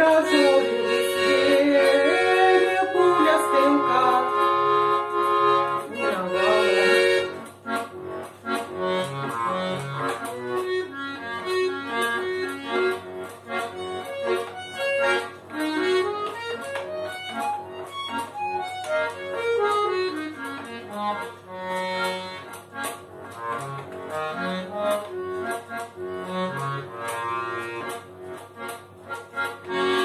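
Bayan (Russian chromatic button accordion) playing an instrumental close. Loud held chords come first, then after about seven seconds the playing drops to a quieter melody. It moves in rising and falling scale runs over short bass-button notes.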